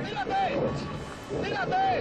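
Speech only: a man's voice talking in short phrases.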